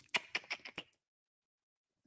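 A quick run of about seven light, sharp clicks within the first second.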